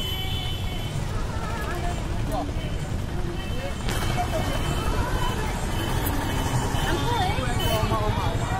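Busy outdoor ambience: a steady low rumble of traffic, with distant voices and faint music over it.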